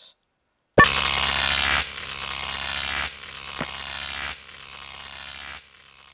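Electric buzzing static sound effect for a robot being shut down and malfunctioning. It starts suddenly with a sharp hit, then steps down in loudness in several stages and fades out.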